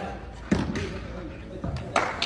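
A volleyball being hit during play: a sharp smack about half a second in, the loudest sound, and more smacks near the end, over players' voices.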